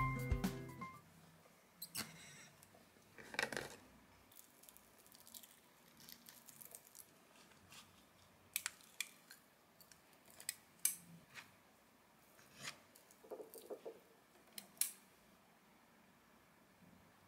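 Background music fading out within the first second. Then quiet kitchen handling: a stainless steel ice cream scoop working thick Greek yogurt out of a tub and releasing it onto a ceramic plate, with scattered soft clicks and short scrapes.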